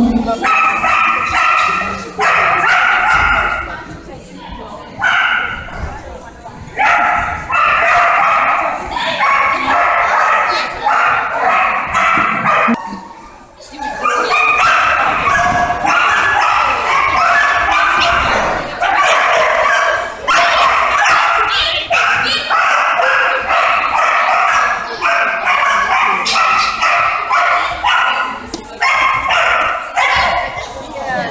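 A dog barking and yapping almost without pause, high-pitched and excited, with a couple of short breaks.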